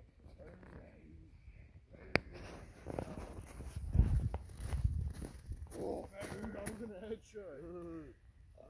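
A person hit by a snowball lets out drawn-out, animal-like growling cries in the middle and near the end. Low rumbles of handling or wind on the phone's microphone come around the middle and are the loudest thing.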